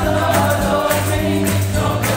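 A gospel choir of mixed voices singing an upbeat number over instrumental accompaniment, with a steady beat.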